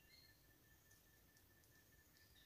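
Near silence: faint forest background with a faint high note pulsing evenly several times a second, and a brief faint higher note near the start.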